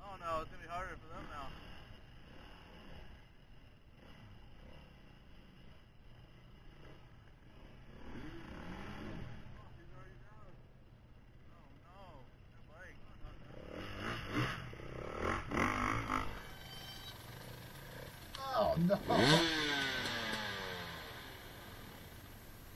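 Dirt bike engine revving in short bursts as the bike is worked and pushed through a rocky creek crossing, the loudest rev coming near the end and falling away after it.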